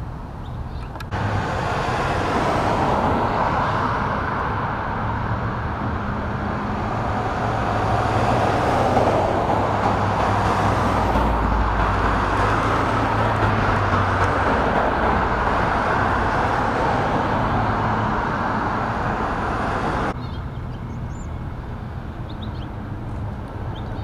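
Road traffic: a steady wash of passing cars with a low engine hum, swelling as a vehicle goes by in the middle. It starts and stops abruptly, and near the end gives way to quieter outdoor ambience with a few faint high chirps.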